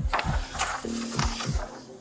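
Clothing or a hand rubbing and scraping against a body-worn camera's microphone, a close, rough rustle. Under it runs background music: a low, dropping bass beat that repeats every few tenths of a second, with a brief held note about a second in.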